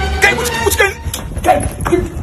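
A man's voice in short, pitch-bending exclamations, with a few sharp clicks and faint background music.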